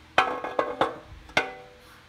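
Metal engine parts being set down and knocking together on the engine: about five sharp metallic clinks, each ringing briefly, all in the first second and a half.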